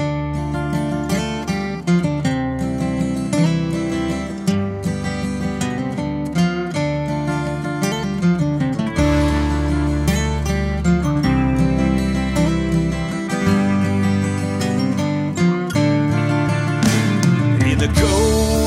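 Two layered steel-string acoustic guitars playing a D Dorian riff in 6/8, the intro of a dad-rock demo. An electric bass guitar joins about halfway through, filling out the low end.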